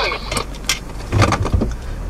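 Clicks and knocks of a camcorder being handled and moved inside a car, over a steady low rumble.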